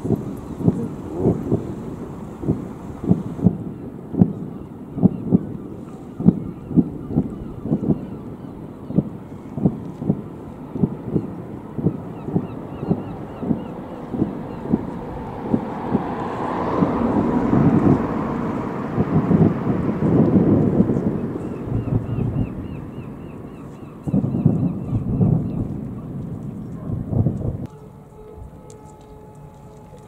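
Distant fireworks display: a quick string of booming bursts, about two a second, swelling into a dense rolling rumble in the middle, then a last flurry that stops abruptly near the end.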